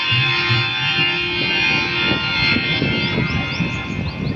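Rajasthani folk ensemble of Langa and Manganiar musicians playing: held instrumental notes that fade out about halfway through, over repeated low drum strokes that carry on.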